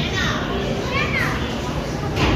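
A young child's high voice calling out in short rising-and-falling squeals, twice, over steady background noise.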